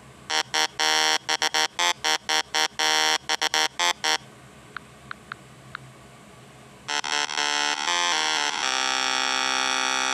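A buzzing horn tone sounding in many short, irregular blasts for about four seconds, then four faint pings, then one long blast that stutters at first and then holds steady.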